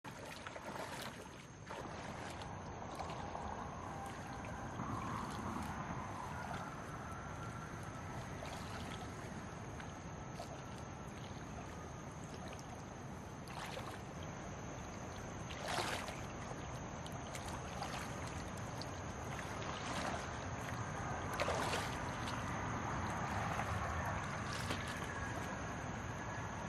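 Shallow stream water sloshing and splashing around bare legs as a person wades through it, over the steady sound of the running stream. Several sharper splashes stand out, the loudest about sixteen seconds in.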